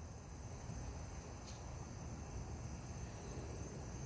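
Quiet outdoor ambience: a steady high insect drone over a low rumble, with one faint tick about a second and a half in.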